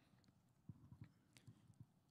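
Faint footsteps on a stage: about five soft, low thumps in an uneven walking rhythm, with a light click in the middle.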